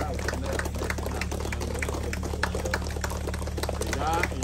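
Many irregular crackles and clicks over a steady low electrical hum, with faint voices in the background.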